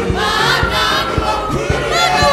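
Rwandan gospel choir singing a lively song in several voices over a steady low beat.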